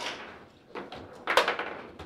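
Foosball table in play: rods sliding and clacking and the players' figures knocking the ball, a few sharp knocks with a louder cluster a little past halfway.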